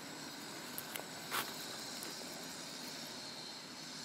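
Steady outdoor background drone, with one short sharp click about a second and a half in.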